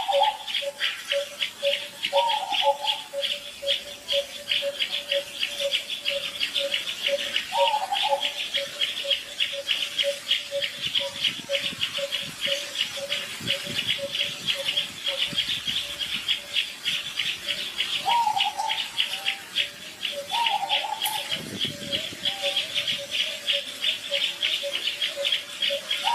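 Insects chirping in a fast, steady pulse, with a lower note repeating about twice a second and a few short calls now and then.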